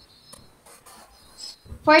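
Faint rubbing and scratching noises with a few light clicks, picked up over an online call; a woman starts speaking near the end.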